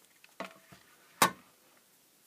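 A handheld digital multimeter set down on a tabletop: a light click about half a second in, then one sharp knock just over a second in as the meter lands on the table.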